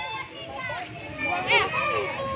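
Children's voices chattering over one another, with one louder, high-pitched child's call about one and a half seconds in.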